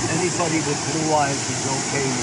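Steady rushing roar of the Waikato River's white water at Huka Falls, with voices talking over it up close.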